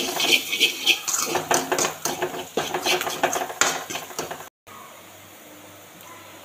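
Metal spoon scraping and clinking against a steel kadai while stirring frying onions and chillies, a quick run of clicks and scrapes. It cuts off about four and a half seconds in, leaving a faint steady hiss.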